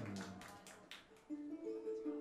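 Ukulele played live: notes die away over the first second, then new single picked notes start about a second and a half in.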